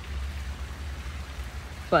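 Steady faint splashing of a swimming pool's bubbler jet over a constant low rumble. A woman's voice starts a word near the end.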